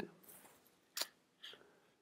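Faint clicks at a computer: one sharp click about a second in and a softer tick about half a second later, typical of a keystroke or a mouse click.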